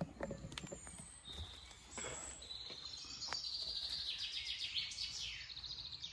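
Songbirds singing, with a fast high trill of rapidly repeated notes starting about two and a half seconds in and carrying on; a few faint clicks.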